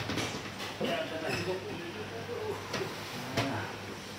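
Indistinct low voices with a few short, sharp knocks and rustles, the loudest knock near the end, as a leg is handled on a treatment bed.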